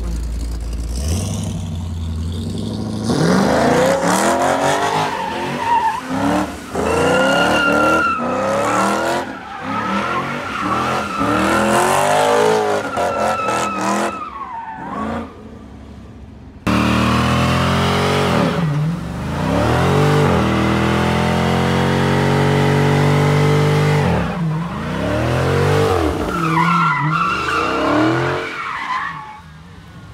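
Powerful car engines revving hard during donuts and a burnout, the engine pitch sweeping up and down over and over, with tyres squealing against the asphalt. The sound dips briefly past the middle, then comes back suddenly at full level.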